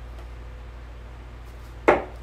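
A Red Dragon Peter Wright Snakebite 3 steel-tip dart striking a bristle dartboard once near the end, a short sharp impact.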